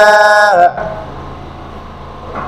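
A man's voice holding one long, steady chanted note at the end of a line of an Arabic supplication poem, cutting off about half a second in; a low steady hum carries on after it.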